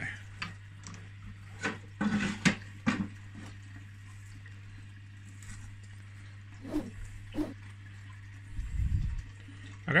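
Plastic frame of a hang-on net breeder box clicking and knocking against the aquarium rim and glass as it is hung in the tank, a handful of sharp knocks spread through, with a short low rumble near the end, over a steady low hum.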